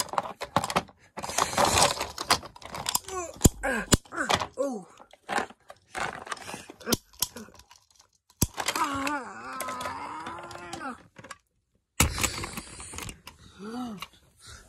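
Hard plastic toys clicking and clattering as they are handled, with a voice making wavering, groaning play sound effects in between and no clear words.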